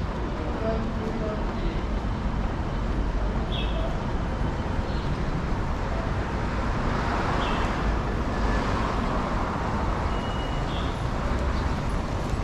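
Steady city road traffic, with one vehicle passing louder about two-thirds of the way through.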